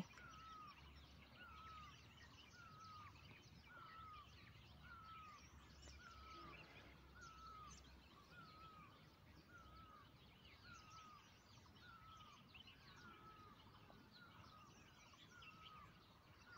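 Faint rural background ambience: a bird repeats a short, bending call about once a second, with other faint bird chirps over a light hiss.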